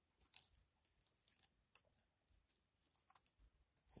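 Near silence with faint, scattered small clicks and scratches, the loudest about half a second in: tongs and wooden skewers prodding silk webbing inside a plastic tarantula enclosure.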